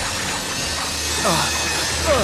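Cartoon action soundtrack: a dense hissing, crackling sound effect of the metal-eating Scraplet swarm attacking a robot, over background score music, with a short falling cry about a second and a half in.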